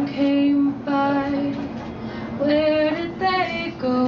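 A woman singing slow, long-held notes, the pitch stepping up and down between phrases.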